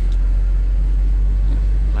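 A FAW JH6 diesel truck's engine and running gear heard from inside the cab while driving, a steady, loud low rumble.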